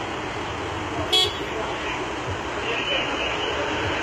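Street traffic noise picked up on a phone video, steady throughout, with one brief sharp sound about a second in.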